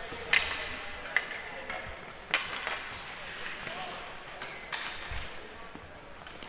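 Indoor ice hockey rink sounds: a few sharp knocks of sticks and puck on the ice and boards, over indistinct voices of players and spectators.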